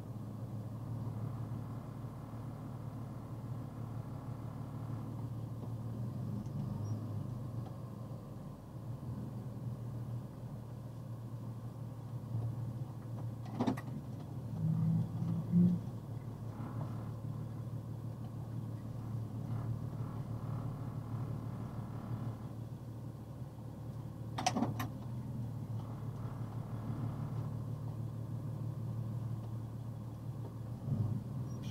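Vehicle engine idling steadily, heard as a low hum from inside the cab through the dashcam, with the vehicle creeping and then standing still. Two sharp clicks sound over it, about halfway through and again later.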